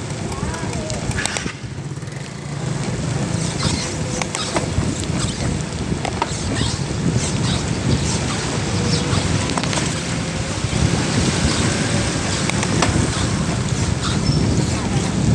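Wind rumbling on the microphone of a handlebar-mounted phone on a moving bicycle, with road and car traffic noise on a wet street.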